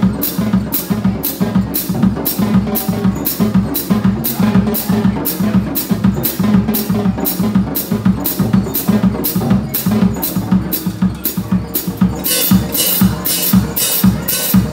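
Live drum kit solo: cymbal strokes keep a steady beat of about two a second over busy snare, tom and bass drum playing. About twelve seconds in the cymbals become louder and denser.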